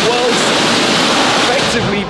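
Pressure-washer jet spraying water onto a car's wheel and wheel arch: a loud, steady hiss of spray that stops near the end.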